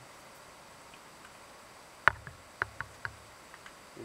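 A sharp click about two seconds in, then several lighter clicks and taps: a power cable's plug being handled and pushed into a tablet's power connector.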